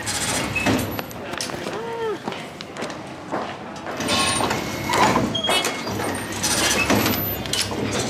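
Metro ticket gate in use as a paper ticket is fed into its slot: repeated clunks and clicks of the gate and barrier, with a few short beeps about four to five seconds in, and voices around.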